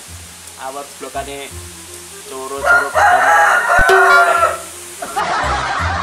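A rooster crowing once, loud, about two seconds long, starting a little before halfway through, over background music with a low bass line.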